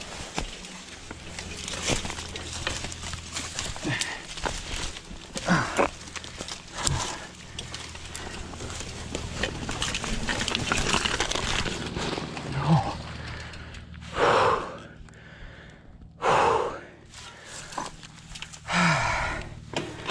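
Mountain bike being ridden down a rough dirt woodland trail: the bike rattles and clicks over the ground with steady tyre rumble. Near the end come a few loud, short bursts of noise.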